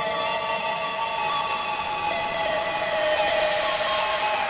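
Breakdown in a phonk track: held synth tones over a steady hissing noise layer, with the drums and bass dropped out.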